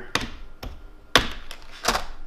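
Plastic tool-kit case handled on a wooden workbench and opened: four sharp clicks and knocks, the loudest a little past halfway, as it is set down and its latches are snapped open.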